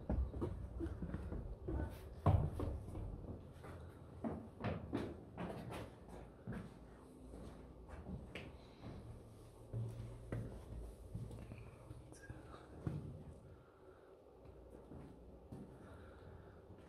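Footsteps on a stone-paved floor in a carved rock passage, a run of irregular knocks that thin out and grow fainter in the second half.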